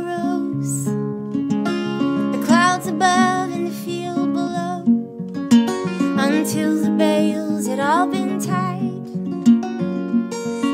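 A woman singing a folk ballad, with wavering held notes and a couple of upward slides, over acoustic guitar accompaniment.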